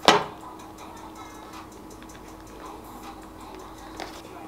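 A single sharp click at the start, then faint light ticks and handling sounds from a multi-colour ballpoint pen being worked over a paper notebook, above a faint steady hum.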